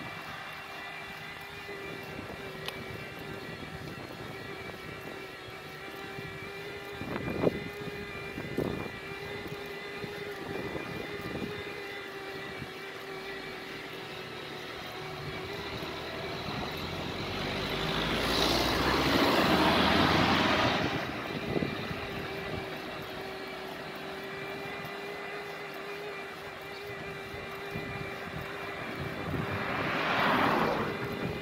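Bhoss Tuono 1000 electric bike's motor whining at a steady pitch while riding, over tyre and road noise. Two knocks come about seven and nine seconds in, and a louder rush of noise swells around the middle. An oncoming car passes at the very end.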